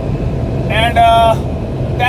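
Steady low rumble of road and engine noise inside a vehicle's cabin at highway speed. About a second in comes a short voiced filler sound, a held "uhh".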